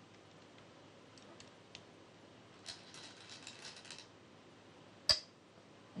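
A Go stone clacks sharply onto the demonstration board about five seconds in, after a second or so of faint rapid clicking from stones being handled.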